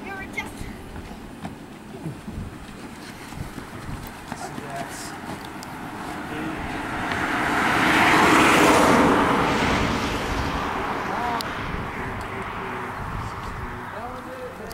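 A road vehicle passing by: its noise swells over several seconds, loudest about eight to nine seconds in, then fades away.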